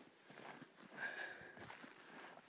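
Faint, irregular footsteps of a walker heading downhill.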